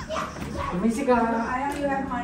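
Voices in a room: drawn-out, wordless exclamations and half-spoken sounds rather than clear words.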